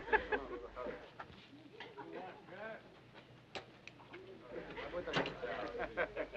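Quiet, indistinct voices of several people talking in the background, with a short sharp click about three and a half seconds in.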